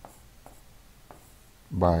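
Pen stylus writing on a tablet surface: faint, light scratching with a few soft taps as characters are drawn.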